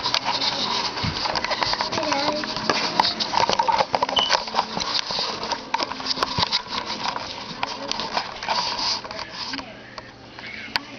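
Rustling and knocking of a handheld camera being carried and handled, with many small clicks over a steady hiss and a muffled voice at times. It gets quieter near the end.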